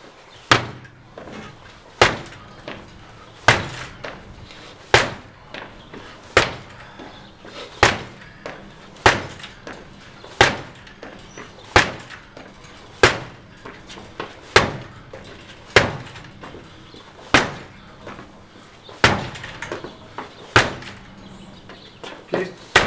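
A metal-sheathed entry door being kicked hard again and again: about fifteen heavy bangs, roughly one every one and a half seconds, each rattling the door in its frame. The door, locked with a strike plate lock, holds through every kick.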